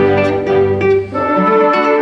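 Live chamber orchestra with a classical guitar soloist playing a guitar concerto, strings and winds holding sustained notes. About a second in the sound briefly dips, then the next phrase begins.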